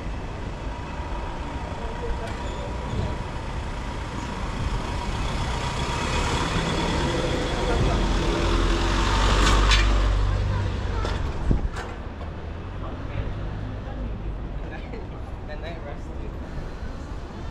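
Street traffic with a delivery truck's engine running close by: the low rumble builds to its loudest about ten seconds in, with a short hiss at the peak, then eases back to general traffic noise. A sharp click follows shortly after.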